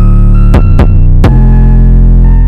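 Electronic beat made in the Drum Pads 24 app: a loud, heavy sustained bass with sharp drum hits and short high synth notes over it.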